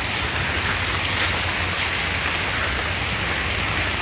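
Steady rain falling, an even hiss that does not let up.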